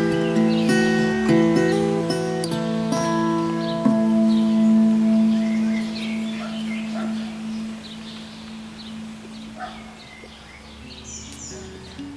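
Ashbury tenor guitar played to the end of a piece: a final chord about four seconds in rings on and fades away. Birds chirp in the background as it dies out.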